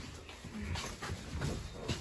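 Low, uneven rumble inside a moving elevator car as it rides up to the second floor, with a sharp click near the end.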